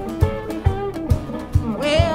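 Blues electric guitar playing a single-note instrumental passage over a steady beat of low cajon thumps, about two a second.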